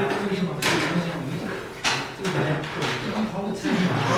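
Several people talking at once in groups, their voices overlapping in a large hall, with a couple of short, sharp handling noises, the clearest about half a second in and just before the two-second mark.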